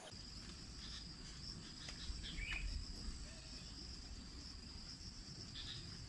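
Insects trilling outdoors in one steady, high, continuous drone over a low rumble. A short falling call is heard about two and a half seconds in.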